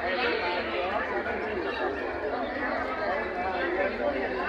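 Several people talking at once, a mix of overlapping voices with no single clear speaker.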